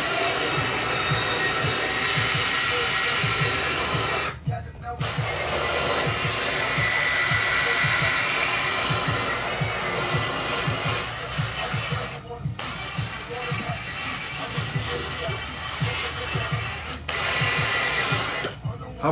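Cordless drill running with its attachment pressed against a sneaker, a steady whirring hiss. It stops briefly about four seconds in and again about twelve seconds in, then dips once more near the end.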